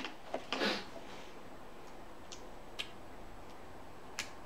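A survival bracelet's ferro rod being struck with its scraper to throw sparks: one short rasp about half a second in, then two faint ticks past the middle.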